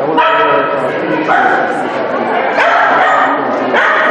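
Small dog barking again and again while running the course, with a person's voice calling at the same time.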